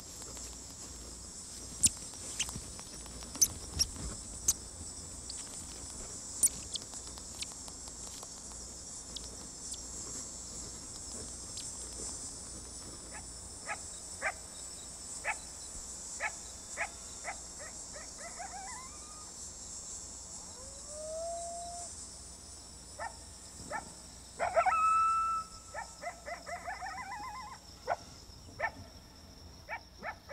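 Steady high-pitched chorus of night insects, with sharp crunching clicks in the first half as a grasshopper mouse chews a scorpion. Later an animal calls: a rising howl, then a louder held call and a run of short yips near the end.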